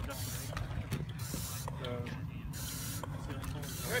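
Weighted steel training sled dragged in short pulls across asphalt, a series of uneven scraping hisses.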